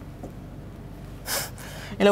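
Low steady room hum, with one short, sharp intake of breath about a second and a half in.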